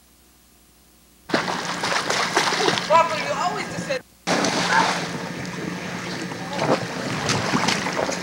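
Water splashing in a swimming pool as a boy dives in, with children's voices calling out over it. A faint low hum comes first, then the splashing and voices start abruptly about a second in and cut out for a moment around the middle.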